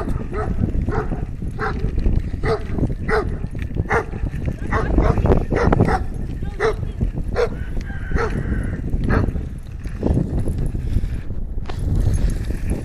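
Small dog barking in a quick run of short, repeated yips, about two a second, stopping near the last few seconds, over a steady low rumble.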